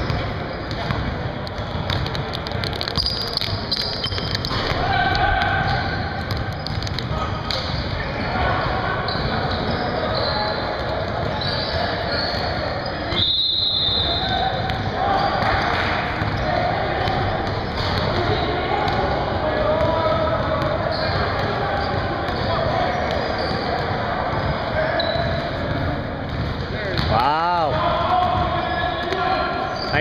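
Basketballs bouncing on a hardwood gym floor during play, with shouts and chatter from players and onlookers in a large, reverberant gym.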